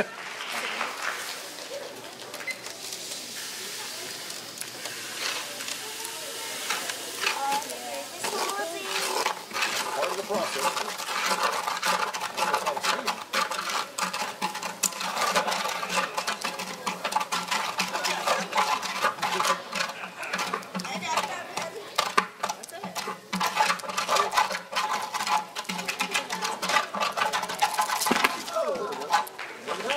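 Indistinct chatter of several people talking in a hall, busier from about a third of the way in, with many short clicks and taps mixed in.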